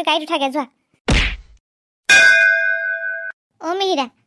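A short falling whoosh ending in a low thump, then a bright metallic clang about two seconds in that rings on with several steady tones for about a second before cutting off suddenly. These are cartoon sound effects of metal cookware being struck.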